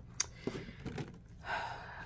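Faint handling noise as thin metal cutting dies and paper are moved on a desk: one sharp click a fraction of a second in and a few light taps. A soft breath follows near the end.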